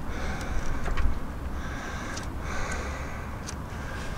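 Backing paper being peeled off a vinyl sticker: soft rustling and crackling in a few short spells, with a few faint clicks, over a steady low rumble.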